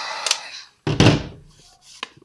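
Wagner heat gun blowing steadily, then dying away within the first half-second. About a second in, a single sudden loud thunk as the heat gun is set down on the table.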